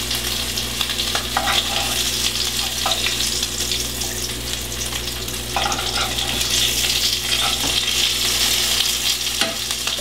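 Oat-coated herring frying in a pan of hot oil: a steady sizzle.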